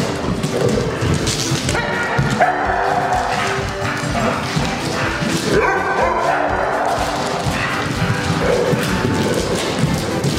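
Background music over dogs barking and yipping as they play together.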